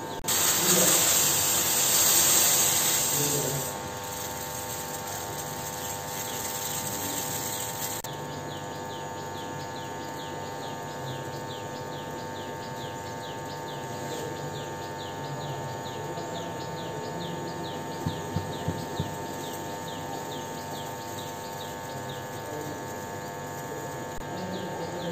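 Rasam boiling vigorously in a steel pot on a gas stove, with a loud hiss for the first few seconds and then a steady hum. From about a third of the way in, a rapid, regular high chirping of several strokes a second runs throughout, and a few short clicks come about three-quarters of the way through.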